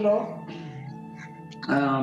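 A voice singing or chanting the word "birthday" over background music with a steady held tone, with a quieter stretch in the middle before the voice comes back near the end.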